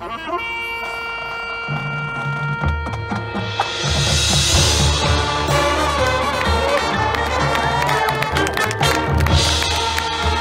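Marching band playing, brass to the fore: held wind chords open the music, low brass notes come in about two seconds in, and the full band swells louder about four seconds in, with another swell near the end.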